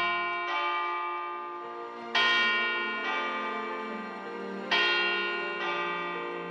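Bells struck in pairs of two notes, the pair repeating about every two and a half seconds, each stroke ringing on and slowly fading.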